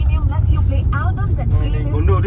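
Steady low rumble of a moving car heard from inside the cabin, with voices talking and laughing over it.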